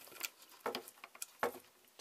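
A few faint, scattered clicks and taps, the strongest about a second and a half in.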